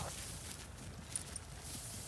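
Two dogs, a Labrador and a young Rottweiler, galloping off across a grass meadow, their paws thudding softly and unevenly on the turf.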